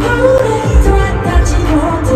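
Live concert performance of a K-pop song: sung vocals over a heavy bass beat, loud and steady.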